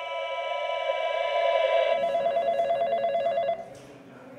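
A sustained drone swells for about two seconds. Then a white desk telephone rings with a rapid electronic warble, which cuts off suddenly about three and a half seconds in.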